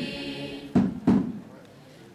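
A group of singers in a pause between phrases of a chanted folk song: two short vocal calls about a second in, then a brief lull.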